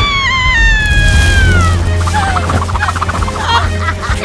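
A woman's long, high-pitched scream that sinks slightly in pitch over about two seconds, then rapid, choppy laughter, over background music with a steady bass.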